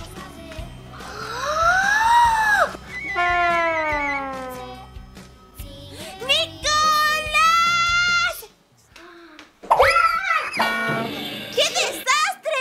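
Children's background music with sliding tones laid over it, one rising then falling and a later one falling, and a child's voice briefly near the end; the music cuts out about eight seconds in.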